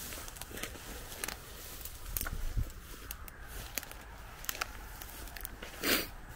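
Footsteps through tall grass and weeds, with dry stems crackling and brushing past, and a louder rustle near the end.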